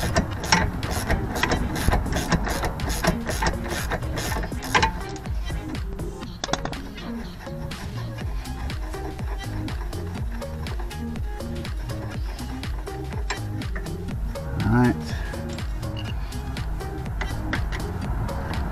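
Rapid metallic clicking of a wrench working the 18 mm nut and bolt of a car's rear suspension arm for the first five seconds or so, over background music that carries on to the end.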